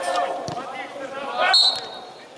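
Players' voices calling out, a single thud about half a second in, then a short shrill blast of a referee's whistle starting about one and a half seconds in.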